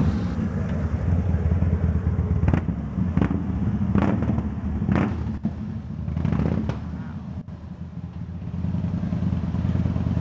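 Cruiser motorcycle engine running at low speed as the bike is ridden slowly into a garage, with a few sharp clicks. It drops quieter for a second or so near the end before picking up again.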